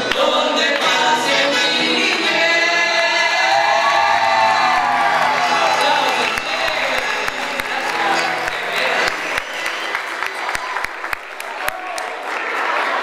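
Men's and women's voices singing a chamamé song together into microphones over an acoustic guitar, ending on a long held note about four to five seconds in. Then the singing fades and scattered hand claps follow.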